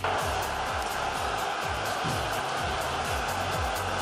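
Stadium crowd cheering, starting suddenly, over background music with a steady thumping beat of about two beats a second.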